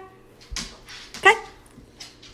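A dog barking once, a single short bark a little over a second in.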